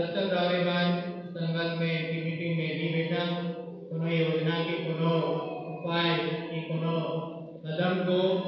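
Voices chanting a prayer on one steady, monotone pitch, in long phrases with brief breaks about four seconds in and again near the end.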